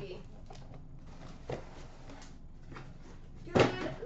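Faint handling noises from a cardboard shipping case: a few light knocks and rustles as the sealed hockey-card hobby boxes are lifted out of it.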